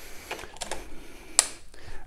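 Megger MST210 plug-in voltage indicator being plugged into a wall socket outlet: faint handling sounds and one sharp click about one and a half seconds in.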